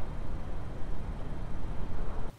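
Steady low background rumble with no distinct knocks, clicks or tones.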